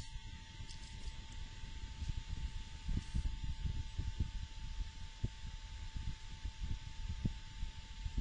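Recording background noise between speech: a low, uneven rumble with soft bumps, a faint steady high whine and light hiss.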